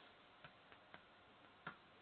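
Near silence with a few faint taps of chalk on a chalkboard while writing, three light clicks spread over two seconds.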